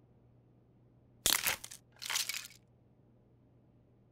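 Wooden pencils snapped and crushed in a fist, a cartoon sound effect: a sharp crack about a second in, then a crunching burst and a second, shorter crunch.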